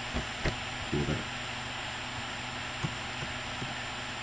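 Steady background hiss with a few faint, scattered clicks of computer keyboard keys as a password is typed.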